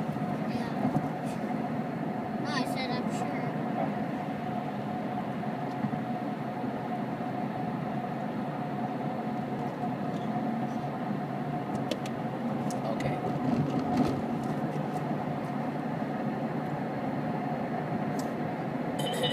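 Steady hum of a car heard from inside the cabin, a low engine and road drone with a few faint clicks.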